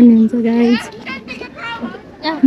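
A high-pitched voice speaking with long, drawn-out syllables for the first second or so, then softer, broken bits of voice.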